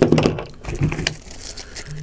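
Handling noise from packaging: irregular rustling, scuffing and light clicks as hands pick up a plastic sleeve of guitar picks from a cardboard box.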